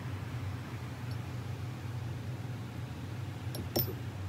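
Steady low background hum, with a few light clicks near the end as the parts of a field-stripped pistol are handled in its case.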